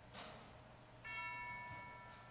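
A single bell-like chime note struck about halfway through, ringing on with several overtones, after a brief soft rustle.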